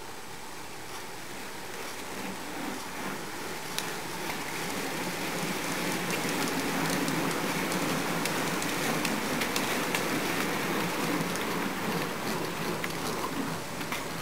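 A bunch of racing bicycles passing close by: tyres hissing on tarmac, with scattered chain and freewheel clicks. The sound builds, is loudest about halfway through as the riders go by, then eases off near the end.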